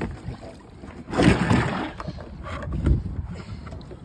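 A plastic cooler being handled and its lid opened, with scattered knocks and a brief rushing noise about a second in.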